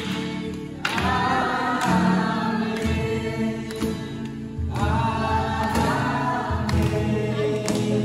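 A group of voices singing a worship song with instrumental accompaniment, in two long phrases with held notes.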